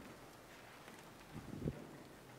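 Two soft footsteps close together, about a second and a half in, over faint room noise in a large hall.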